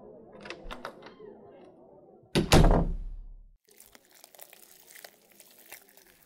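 A door worked with a few sharp clicks, then shut with one loud, heavy thud about two and a half seconds in, followed by soft rustling and crinkling.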